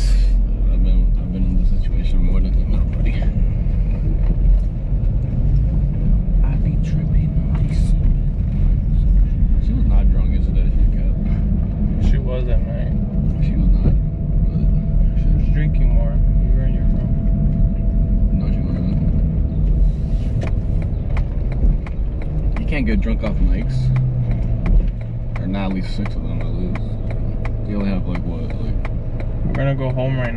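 Car interior while driving: a steady low engine and road rumble filling the cabin, dropping somewhat in level about 25 seconds in as the car slows.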